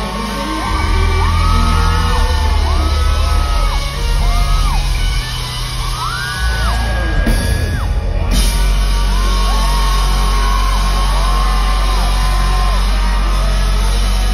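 A live rock band plays loudly in a large hall, with an electric guitar in front. Sustained high lead notes slide up into each note, hold and fall away, over heavy bass that settles into a steady drone about 8 seconds in.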